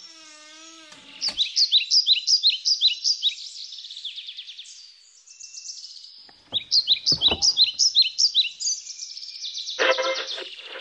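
A songbird repeats quick, high, falling chirps in two runs. There is a short wavering squeak at the start and a few low thumps in the middle. Right at the end a tabletop radio comes on with voice and music.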